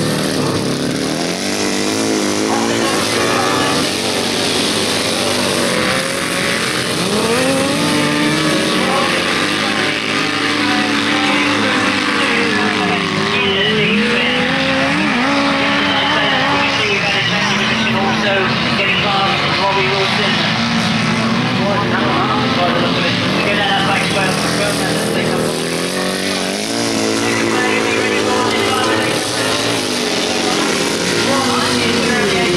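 Several grasstrack racing sidecar outfits' engines revving hard as they race. The engine pitch rises and falls again and again as they accelerate, shut off for corners and pass by.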